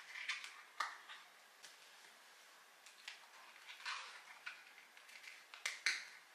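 Light handling noise of plastic wet-wipe lid caps and cables: scattered small clicks and brief rustles as hands work at a cap on the wall, with a few sharper clicks, the loudest about a second in and near the end.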